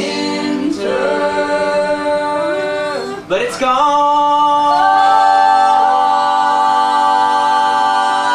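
Male and female voices singing together in close harmony, with a short break for breath about three seconds in, then one long held chord.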